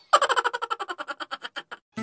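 Sound effect from an animated logo intro: a rapid run of short ringing taps, about a dozen a second, that grows quieter and stops shortly before two seconds.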